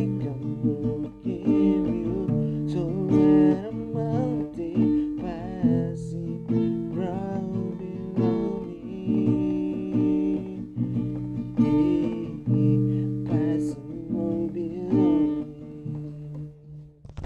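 Strummed acoustic guitar, capoed, with a man singing over it.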